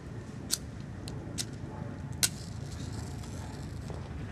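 Dry kindling sticks clicking and snapping as they are set into a teepee fire lay: four sharp clicks, the loudest a little after two seconds in, over a steady low rumble.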